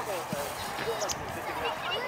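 Children's voices calling and shouting across a football pitch, with a couple of dull thuds of the ball being kicked.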